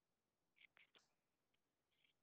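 Near silence, with a few faint short sounds between about half a second and one second in.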